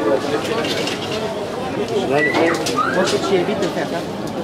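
Crowd chatter at an open-air market: many overlapping voices, with no single speaker clear. Just after the middle, two short high calls rise and fall in pitch above the babble.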